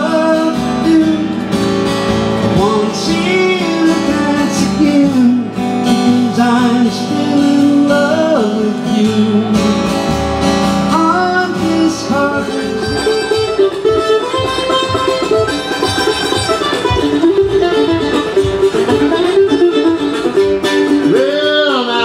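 Live music: a man singing while playing an acoustic guitar. About halfway through it gives way to a man singing to a mandolin played with quick, busy picking.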